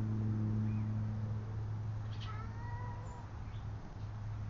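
A cat meows once, briefly, about two seconds in, over a steady low hum that stops near the end.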